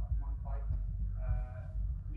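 An off-mic person's voice, distant and hard to make out, with one drawn-out vowel partway through, over a steady low rumble.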